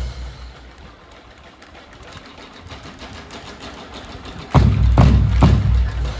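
A drum and lyre corps' drumming breaks off, leaving a few seconds of faint background. The bass drums and snares then come back in together about four and a half seconds in, with heavy beats about two a second.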